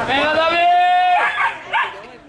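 A dog giving one long, high cry that rises and then holds for about a second, followed by two short cries.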